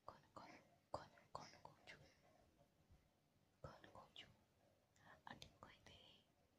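Faint whispering in two short spells, with soft clicks among them.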